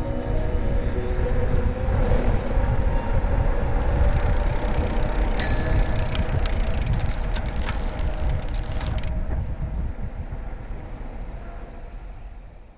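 Steady low rumble that slowly fades out near the end. In the middle comes a burst of hiss and clicks, with a single bicycle-bell ding about five and a half seconds in.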